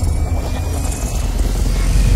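Cinematic intro sound effect: a deep, steady low rumble with a faint tone rising slowly above it.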